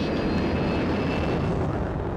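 Lockheed SR-71 Blackbird's two Pratt & Whitney J58 jet engines at max thrust with afterburners lit on the takeoff roll: a steady, loud jet roar with a faint high whine on top.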